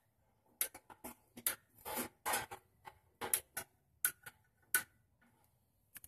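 Long-reach utility lighter clicked again and again at the burner of a portable propane grill, trying to light it: over a dozen sharp, irregular clicks in the first five seconds, with a few slightly longer noisy bursts around two seconds in, and one more click near the end.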